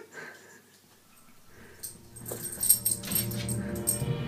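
A Cavalier King Charles spaniel puppy making small sounds, with a few short high clicks in the second half, while music fades in underneath.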